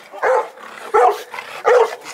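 A pit bull-type dog barking three times, about two-thirds of a second apart.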